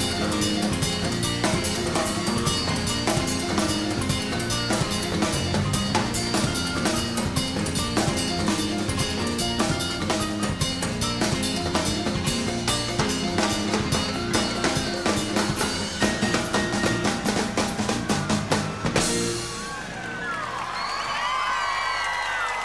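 Live band playing a fast, drum-heavy instrumental passage, sticks striking timbales and cowbell over the kit. It stops about nineteen seconds in, and a large crowd cheers and whistles.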